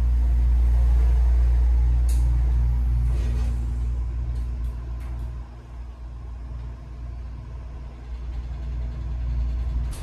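Schindler 330A hydraulic elevator's pump motor running with a loud, steady low hum as the car travels up. It eases off about five seconds in and stops near the end.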